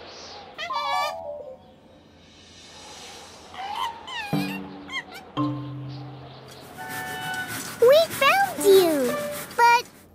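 Cartoon monkey characters chattering and calling in voiced 'ooh-ooh' cries that swoop up and down in pitch, over light background music. A short call comes about a second in, and a louder run of swooping calls comes near the end.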